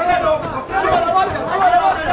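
Several people's voices talking and calling out over one another without pause.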